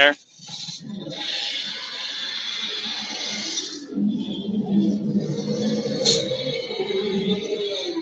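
Recorded velociraptor sound effect played through the speaker of an animatronic raptor prop being tested: a long hiss for the first few seconds, then a low rumbling growl from about four seconds in.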